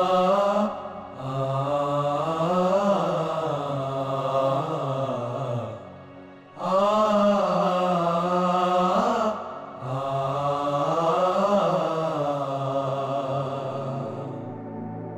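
Background music score with a drawn-out, chant-like vocal line over a low sustained tone. The same slow phrase is heard twice, with a short break about six seconds in.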